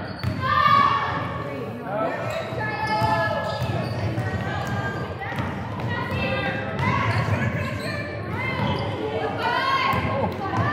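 Basketball dribbled on a hardwood gym floor, the bounces mixed with indistinct voices of players and spectators, echoing in the large gym.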